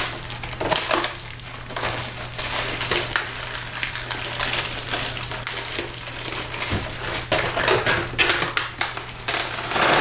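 A plastic bag of dried black-eyed peas crinkling and rustling as it is handled and opened, with many irregular small crackles and clicks.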